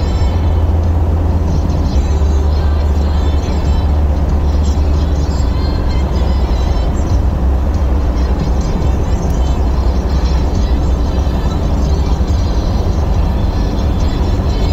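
Steady low rumble of a car at highway speed, heard from inside the cabin, with music playing over it.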